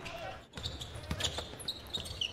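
Basketball bouncing on a hardwood court in game broadcast audio, with arena background noise; the sound dips briefly about half a second in.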